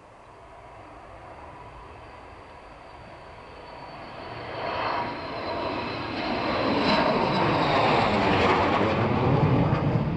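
Delta-wing military jet approaching and flying low overhead, its engine noise growing steadily from faint to loud, with a high whine over the rumble that sinks slightly in pitch as it draws level.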